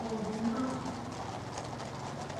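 Hooves of a troop of cavalry horses clip-clopping on a paved road.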